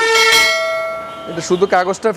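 A single bell ding from a subscribe-button sound effect, struck once and fading away over about a second and a half.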